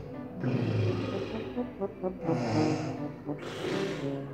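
A man snoring, about three drawn-out snoring breaths, each with a low buzz, over background music.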